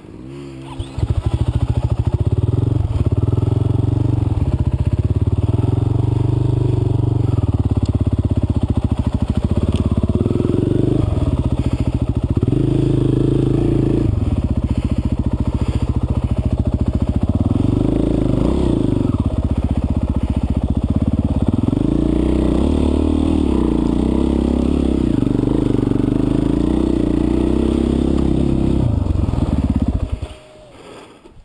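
Dirt bike engine, heard from on board, running under load and revving up and down with the throttle. It comes in loud about a second in.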